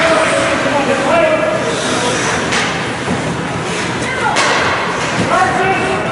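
Ice hockey rink during youth game play: shouting voices echo in the arena, and two sharp knocks of puck, sticks or players hitting the boards come about two and a half and four and a half seconds in.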